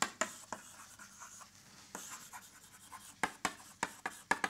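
Chalk writing on a blackboard: sharp taps of the chalk striking the board with scratchy strokes between them. A few taps near the start, then a quick run of taps toward the end.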